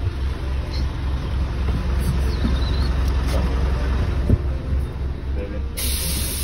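City bus engine idling with a steady low rumble, heard from inside the bus at the door. A single knock comes about four seconds in, and a sudden hiss starts near the end.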